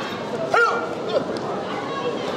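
Short yelled shouts, one about half a second in and another just after a second, over the steady chatter of a crowd in a sports hall.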